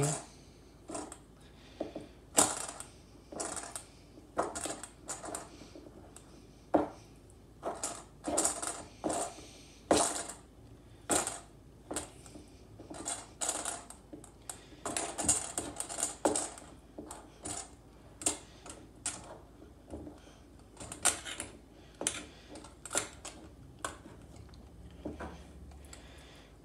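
Metal spoon stirring a thick, stiff peanut-butter-powder dough in a stainless steel bowl, with irregular clinks and scrapes of spoon against bowl, a few a second.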